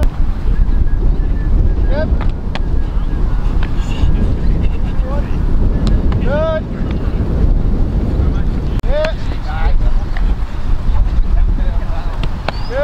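Wind buffeting the microphone, a steady low rumble, with about seven short calls that rise and fall in pitch, each under half a second, and a few faint sharp knocks.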